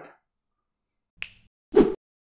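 Two short snap-like sound-effect hits on the channel's animated logo sting: a faint high click about a second in, then a louder pop near the end.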